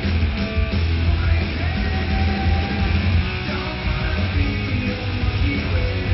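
Loud recorded rock music with distorted electric guitar, played over the arena speakers for an air guitar routine.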